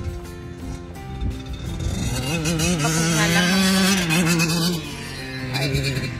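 A motocross dirt bike passing close by, its engine revs wavering up and down, loudest from about two to five seconds in, over background music.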